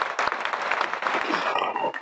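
Audience applauding, a dense clatter of many hands clapping that thins out in the last half second.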